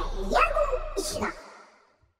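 End of the outro jingle: a few short voice-like calls over the tail of the music, fading out to silence about a second and a half in.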